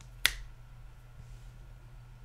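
A single sharp click of a computer mouse button about a quarter second in, over a low steady hum.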